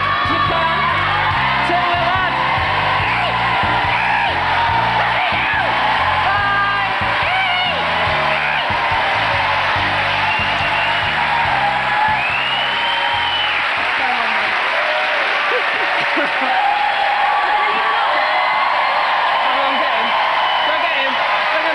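Studio audience applauding and cheering with whoops, over music from the show's band, which stops about two-thirds of the way through while the applause carries on.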